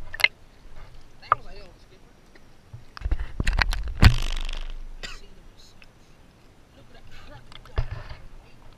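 River water sloshing and splashing right against a camera held at the water's surface, loudest from about three to five seconds in, with a sharp splash about four seconds in. There are a man's brief vocal sounds before it.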